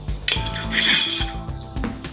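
A metal spoon clinking as it is set down, with a glass coffee jar being put down and its lid handled, over light background music.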